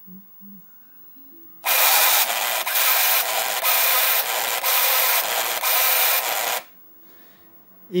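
Sinclair ZX Printer printing on aluminium-coated paper, its stylus burning away the aluminium coating: a loud buzz that starts about a second and a half in and lasts about five seconds, with short regular dips, then stops abruptly.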